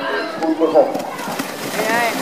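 People talking, then from about a second in the splashing of a four-horse team and carriage charging into a water obstacle, with a voice calling out near the end.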